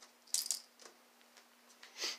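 A few short rattling, clicking handling noises, the loudest cluster about half a second in and a smaller one near the end, over a faint steady hum.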